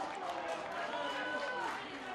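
Several voices of players and spectators shouting and calling over one another, reacting to the goalkeeper's save.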